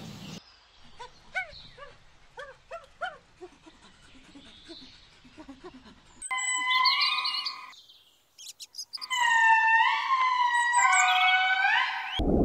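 Animal calls: faint short chirps repeat over the first six seconds. Louder, drawn-out calls with a clear pitch follow, some swooping up and down; they stop briefly around eight seconds in, then return.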